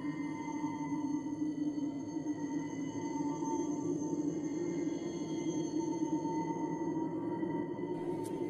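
Background music: an eerie drone of several steady, unchanging tones held together without a beat.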